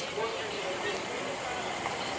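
Indistinct voices over a steady outdoor background noise.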